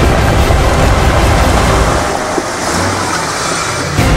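Off-road 4x4 engine working as the vehicle climbs a steep sand slope, buried in loud rushing noise. The deep rumble thins out about halfway through.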